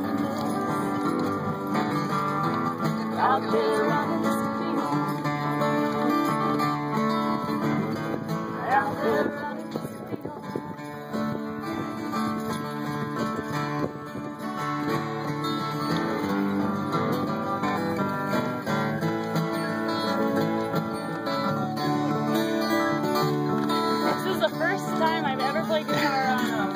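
Acoustic guitar strumming the chords of a song, played live.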